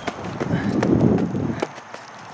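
Handling noise and footsteps of a handheld camera being carried along: a dull rustling rumble with a few clicks, loudest about a second in.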